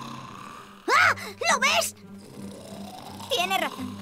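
Short wordless vocal cries from animated cartoon characters, rising and falling sharply in pitch, once about a second in and again near the end, over steady background music.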